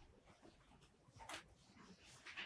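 Near silence: room tone, with one faint, brief sound a little past a second in.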